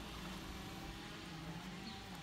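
Renault Duster SUV idling, a faint steady low hum.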